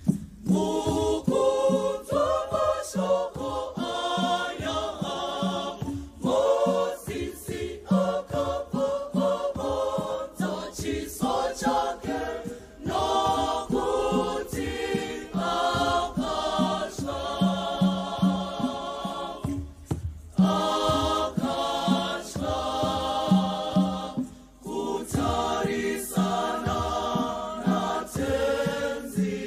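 A choir singing a hymn in harmony, in phrases with short breaks between them, over a steady percussion beat of knocks.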